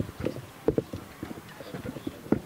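A series of irregular soft knocks and clicks, several a second and unevenly spaced, with faint voices behind.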